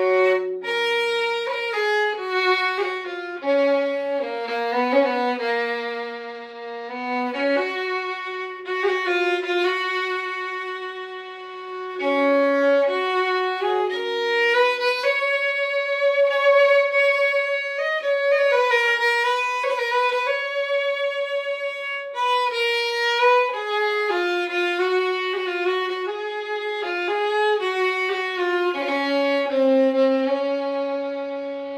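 Solo fiddle playing a slow Irish air, the instrument tuned a half tone down. The melody moves in long held notes with small slides and ornaments between them.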